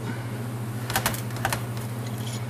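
Small metallic clicks of a tool prying the retaining clip off the water pump in a motorcycle clutch cover: a quick cluster of clicks about a second in and one more shortly after.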